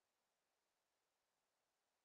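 Silence: digital near silence with only a faint, even hiss.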